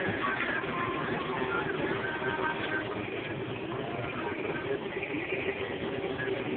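Supermarket ambience: a steady rumble from the wheels of a shopping cart being pushed along a hard floor, with faint background music and voices.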